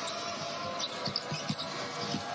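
Basketball being dribbled on a hardwood court, a few low knocks, under steady arena crowd noise, with a few short high squeaks about a second in.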